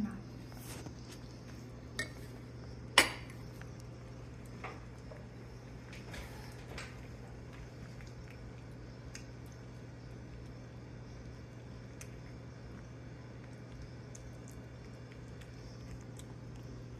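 A metal spoon and ceramic dish clinking now and then as a cat eats wet food from the dish, with one sharp clink about three seconds in the loudest and a few fainter ones after, over a steady low hum.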